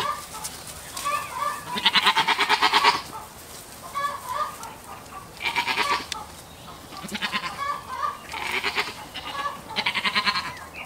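Goats bleating repeatedly: about five wavering calls, the longest lasting about a second near two seconds in, with softer short calls between them.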